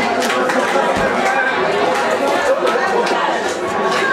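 Crowd of people talking and shouting over one another, a dense babble of many voices, with a single dull thump about a second in.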